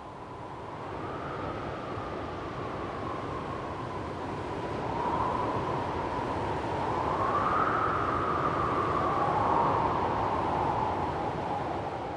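Wind blowing steadily, with a faint whistling tone that rises and falls and a gradual swell in strength toward the middle.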